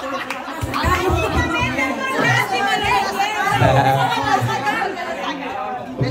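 Several people talking over one another at once, a steady chatter of overlapping voices with no single clear speaker.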